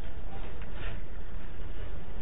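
Steady low rumble with a faint hiss: the background noise of an old, narrow-band classroom recording.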